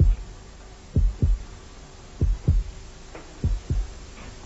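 A slow heartbeat sound effect: pairs of low, muffled thumps (lub-dub) repeating about every second and a quarter over a faint steady hum.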